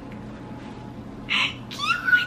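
A woman's short breathy burst, then a high-pitched excited squeal that rises in pitch near the end.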